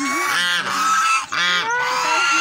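Several domestic geese honking loudly and repeatedly, their calls overlapping at about two honks a second.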